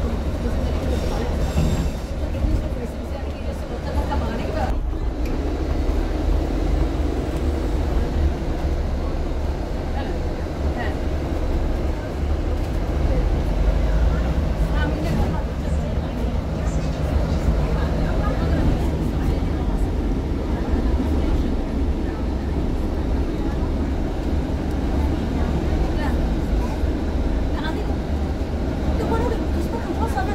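Steady low rumble of a London double-decker bus in motion, heard from inside the passenger deck: engine drone and road noise without a break.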